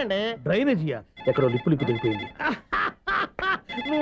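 A telephone ringing over men talking in Telugu: one ring of a little over a second starts about a second in, and a second ring begins near the end.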